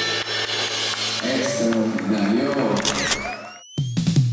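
A voice with a rising-and-falling pitch over a hall's background sound, with a rising whistle-like glide near the end. The sound cuts off abruptly shortly before the end.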